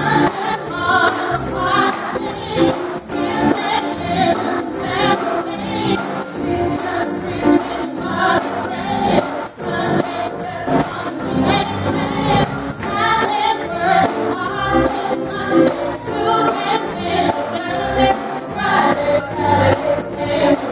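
Gospel music: a group of voices singing together, with a tambourine keeping a steady beat.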